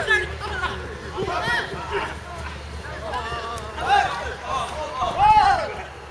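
Men's voices shouting and calling out during rugby play, a string of loud calls, the loudest a little after five seconds in.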